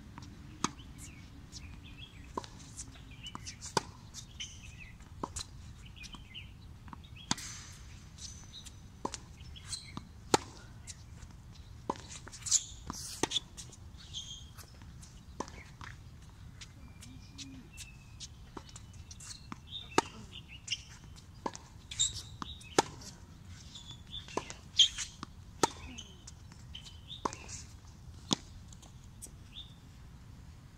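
Tennis balls struck by racquets and bouncing on a hard court during a baseline rally: irregular sharp pops every second or so. Birds chirp in the background.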